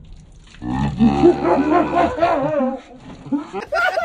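A man letting out a long, wavering yell as water is poured over his head, over the splash of the water. Choppy laughter breaks out near the end.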